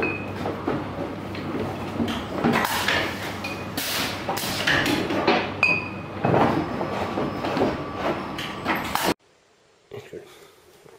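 Glass champagne bottles knocking and clinking against one another and the metal rail of a rotating accumulation table on a bottling line, with a continuous mechanical rattle and a few brief bright glass pings. The sound cuts off suddenly about nine seconds in.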